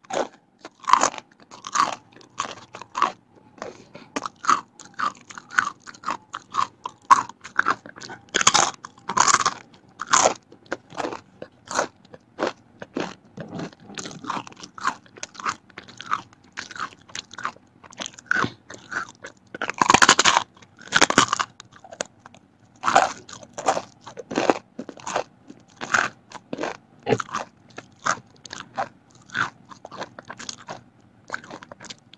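Close-miked crunching of thin fried vegetable crackers being bitten and chewed: a quick, irregular run of crisp crunches, with louder bursts of biting about a third and two-thirds of the way through.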